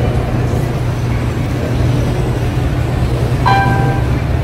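Steady low rumble of a moving vehicle, with one short pitched note about three and a half seconds in.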